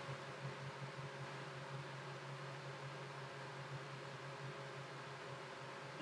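Faint room tone: a steady low hum under an even hiss, with no distinct sound events.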